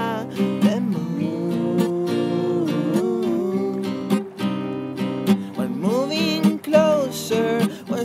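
Acoustic song with strummed acoustic guitar and a sustained melody line that slides up and down between notes, without sung words.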